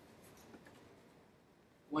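Faint scratching of a pen writing on paper in a near-silent pause. A man's voice starts again at the very end.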